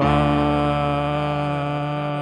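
Voices holding one sustained, steady sung chord on a vowel over a held low bass note, as the music pauses on a long chord after the chorus.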